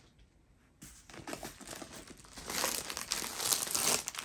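Plastic packaging crinkling and rustling as a rolled diamond-painting canvas is handled and a plastic-wrapped bundle of drill bags is pulled out. It begins about a second in and gets louder near the end.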